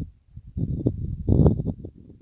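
Wind buffeting the phone's microphone in uneven low rumbling gusts, strongest about a second and a half in.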